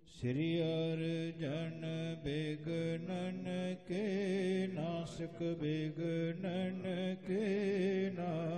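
A man chanting verses in a slow, melodic recitation, his voice rising and falling in short phrases with brief breaks, over a steady held drone.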